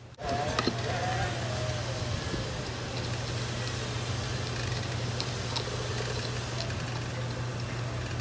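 A steady motor hum starts abruptly just after the start and runs on at an even level, with a faint whine that slides slowly down in pitch over the first couple of seconds. Faint light ticks sit on top of the hum.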